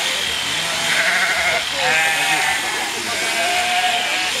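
Sheep bleating, two quavering calls close together about a second in and near the middle.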